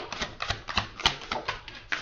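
A tarot deck being shuffled by hand: a quick, irregular run of card clicks and snaps.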